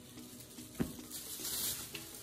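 Dry rustling of a bundle of dried-grass floral picks being handled and laid down, with a single light tap a little under a second in.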